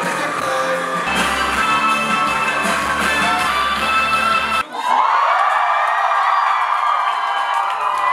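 Live rock band with electric guitars and bass playing in a club. A little over halfway the music cuts off abruptly and a crowd cheers and screams.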